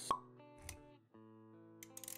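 Intro music for an animated logo sequence: a sharp pop just after the start, a soft low thump a little later, then quiet held synth notes with a few clicks near the end.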